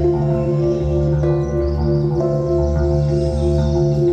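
Live band playing a slow, ambient keyboard passage: held electric keyboard chords that change about once a second over a sustained low bass note.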